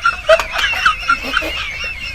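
Poultry calling: a run of short clucks, about four a second, with a higher wavering call over them.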